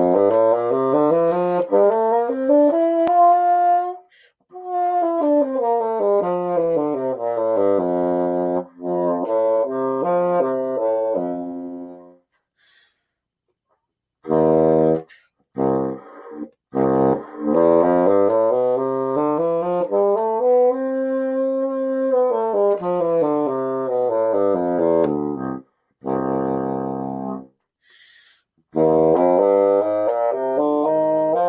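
Bassoon playing major scales, each climbing and then descending note by note, with short breaks between scales. A new scale starts rising near the end.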